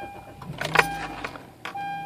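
Honda CR-V's four-cylinder engine being started: the starter cranks briefly and the engine catches about half a second in, then settles into a low steady idle. A dashboard warning chime sounds on and off as a steady beep throughout.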